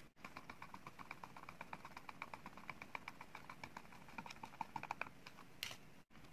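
A quick run of faint small clicks, about eight a second, then a short scrape near the end: a small screwdriver turning a screw in a plastic intercom housing.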